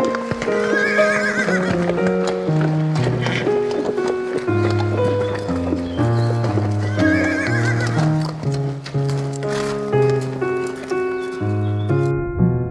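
Background music with a stepping bass line, over which a horse whinnies twice, a wavering call about a second long, near the start and again about halfway through.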